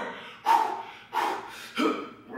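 A man breathing hard under exertion during dumbbell front raises: three short, forceful breaths about two-thirds of a second apart.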